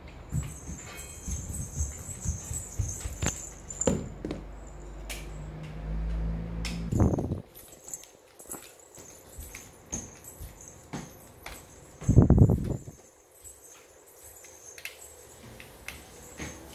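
Small plastic toy building pieces being handled and pressed together: scattered short clicks and knocks, with a louder dull thump about twelve seconds in.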